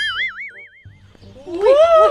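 A cartoon 'boing' sound effect: a springy tone wobbling up and down in pitch for about a second, then fading. About a second and a half in, a person lets out a loud rising exclamation.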